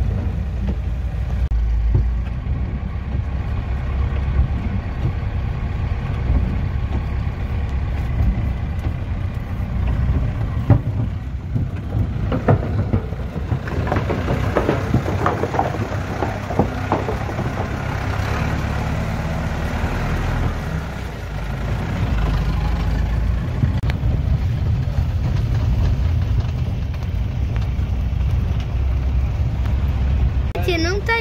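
Agrale-based motorhome's engine running steadily, heard from inside the cab, with tyre noise on a wet gravel road. A louder hiss with scattered crackles comes in around the middle.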